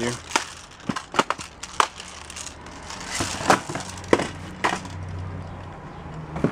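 Small plastic-cased pocket games being picked up, knocked together and set down while rummaging in a plastic tote: scattered sharp clicks and knocks over soft rustling.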